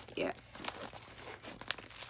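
A squishy mailed package's wrapping crinkling and tearing in faint, scattered crackles and clicks as it is worked open by hand.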